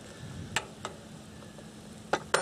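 Sliced mushrooms sizzling gently in butter in a RidgeMonkey pan over a gas stove: a soft, steady frying hiss, with two light clicks about half a second and just under a second in.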